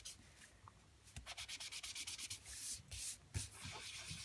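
Foam sponge rubbed and dabbed over embossed cardstock to apply ink: a faint series of short scratchy rubbing strokes, starting about a second in.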